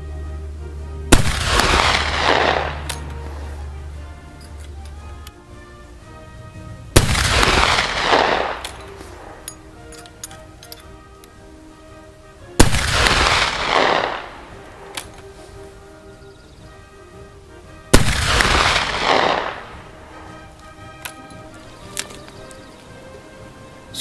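Four shots from a Mk I Martini-Henry single-shot rifle firing black-powder .577/450 cartridges, spaced about five to six seconds apart. Each is a sharp report followed by an echo dying away over about a second and a half.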